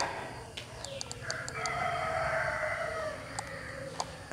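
One long animal call lasting about two seconds, starting a little after the first second, with a few light ticks before it.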